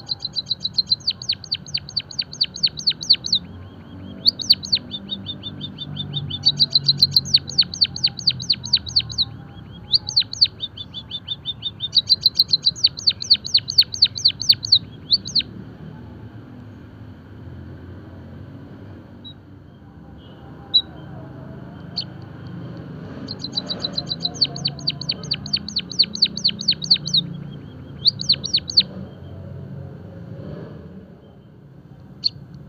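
White-headed munia singing: runs of rapid, evenly spaced high clicking notes, about six a second, each run lasting two to five seconds, with a pause of several seconds midway before the song starts again.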